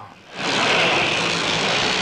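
Motorcycle engines running loud and steady on an arena track, the roar starting suddenly about half a second in.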